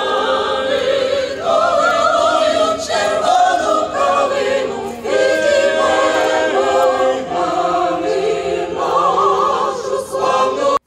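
A choir singing, several voices holding long notes with vibrato.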